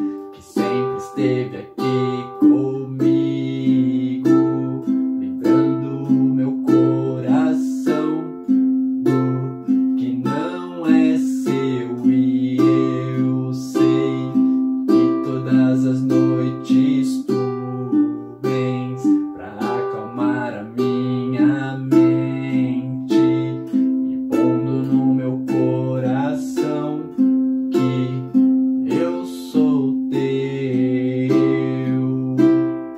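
Ukulele fingerpicked in a compound pattern: strings 4, 2 and 1 plucked together, then string 3 alone, repeated in an even rhythm through a C, G, Am, F chord progression. A man sings along over it.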